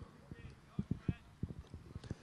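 Faint sound from the football pitch: a quick, uneven run of soft, dull thuds from the players and the ball on the turf, with faint distant calls from players.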